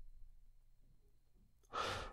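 Near silence, then a short intake of breath near the end, drawn just before speech resumes.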